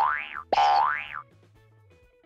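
Cartoon sound effect played twice in quick succession, each a short sound whose pitch rises and then drops, followed by soft background music.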